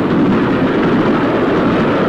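Steady rushing noise of a train running at speed, a sound effect in the soundtrack of an old black-and-white TV episode.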